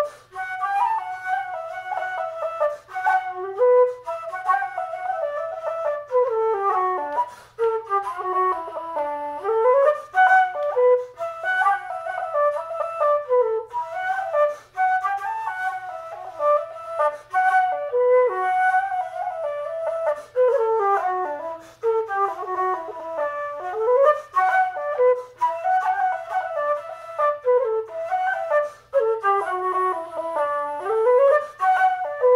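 Solo keyed simple-system (Irish-style) flute playing a traditional tune in D, a continuous line of quick notes running up and down in flowing phrases with only brief breath gaps.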